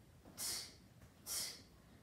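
A child's sharp exhalations, one short breathy hiss with each karate reverse punch, twice about a second apart.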